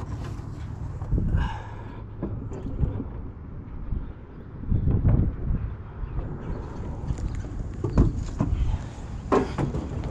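A water dispenser being carried and handled: footsteps, rustling and several short knocks of its body, the sharpest near the end as it is set down, over a steady low rumble.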